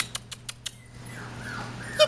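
A few quick sharp taps in the first second, then faint, high puppy whimpering.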